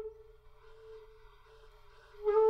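A pause in unaccompanied trumpet playing: a held trumpet note cuts off right at the start, leaving only a faint tone lingering at about the same pitch.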